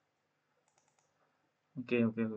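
A few faint computer mouse clicks in quick succession about a second in, with a man's voice starting just before the end.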